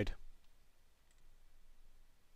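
Near silence after a spoken word fades out in the first moment, with one or two very faint clicks.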